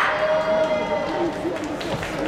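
Voices carrying through a large sports hall, the end of a loud shout fading at the start, and a single sharp snap shortly before the end.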